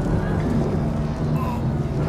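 A dense film soundtrack mix: long held low notes of orchestral score over a continuous low rumble of sound effects.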